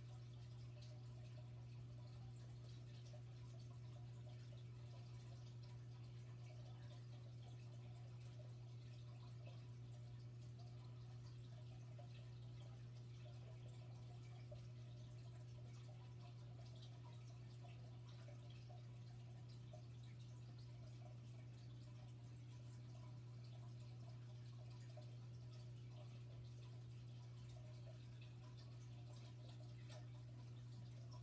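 Near silence: room tone with a steady low hum and faint scattered ticks.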